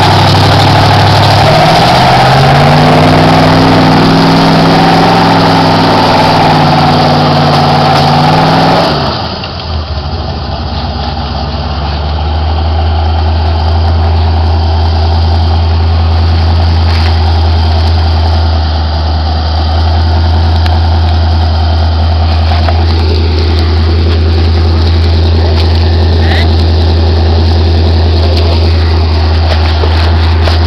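Truck engine revving hard in deep mud, pitch rising and falling, for about nine seconds; then it abruptly gives way to a steady low engine drone.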